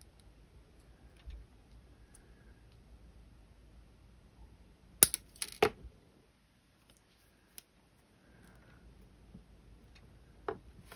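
Jewelry pliers working copper wire on a stone donut pendant: faint handling and rubbing, then two sharp metallic clicks about five seconds in and a small click a couple of seconds later.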